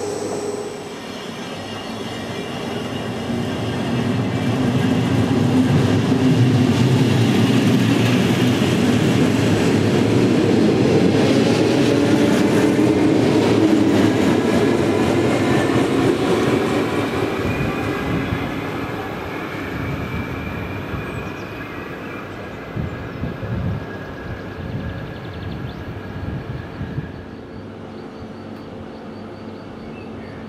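A regional electric train passes: its running noise builds over a few seconds, stays loud for about ten seconds, then fades as it moves away. Near the end come scattered wheel clicks.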